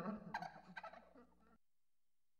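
Tail of a cackling ghost-laugh horror sound effect: a few last cackles fading out, then cut off sharply to silence about one and a half seconds in.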